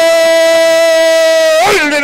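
A male radio commentator's long, held goal cry ("Gooool") on one steady pitch, loud, breaking off about one and a half seconds in into fast speech.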